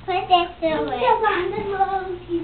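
A young child singing, the voice gliding up and down in a continuous sung line.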